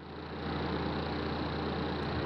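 Steady background hiss with a low electrical hum: the recording's room tone.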